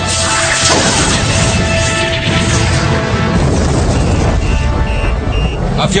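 Action-cartoon soundtrack: orchestral music over a continuous low rumble and crashing impacts of an aerial battle, with three short high beeps near the end.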